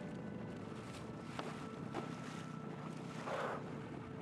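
Boat engine running steadily under wind on the microphone and sea noise, with a short hiss a little after three seconds in.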